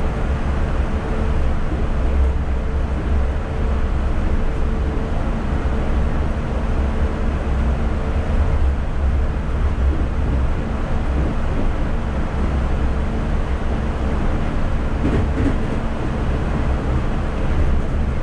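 Yurikamome rubber-tyred automated guideway train running steadily at speed, heard inside the car: a constant low rumble from the tyres on the concrete guideway. A faint steady hum rides over it and fades out about five seconds in.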